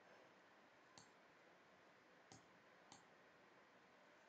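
Near silence broken by three faint computer mouse clicks, the first about a second in and two more close together near the three-second mark.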